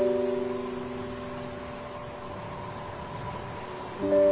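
Soft relaxation music: one held chord that fades away over the first two seconds, over a steady wash of ocean surf.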